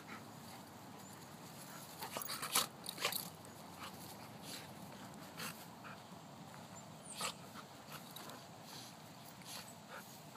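Two dogs play-wrestling, with short scattered mouthing and scuffling sounds that are busiest between two and three seconds in, and another single sharp one a few seconds later.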